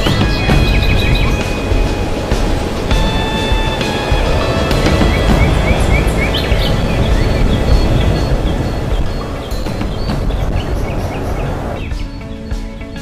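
Background music from a promotional montage: sustained high synth notes over a heavy low end, with a run of short rising chirps about five to six seconds in.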